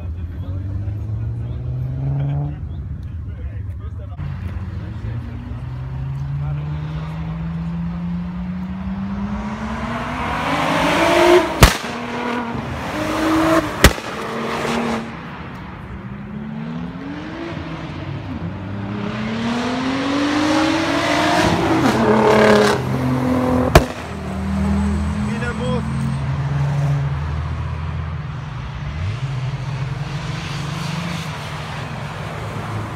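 Car engine revving hard twice, its pitch climbing steadily for several seconds each time, with sharp loud cracks at the top of the runs. A lower, steady engine sound follows near the end.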